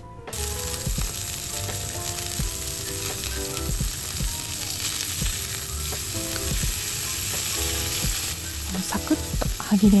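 Sauce-marinated slices of thick-cut beef tongue sizzling as they cook. The sizzle starts suddenly just after the beginning and holds steady.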